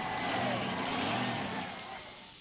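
A truck engine running at a low, steady pitch over a broad background wash. The engine is clearest in the first half and fades somewhat toward the end.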